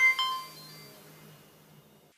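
Logo jingle: two quick bright chime notes, a fifth of a second apart, ring out and fade over the next second and a half above a faint low drone.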